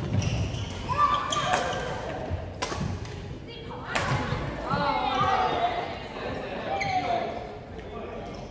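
Badminton rackets striking a shuttlecock in a rally: several sharp cracks, with players' voices in between, echoing in a large sports hall.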